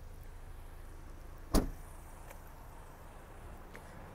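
A single sharp thump about one and a half seconds in, a Ford Bronco Sport's driver's door being shut, over a faint steady low background.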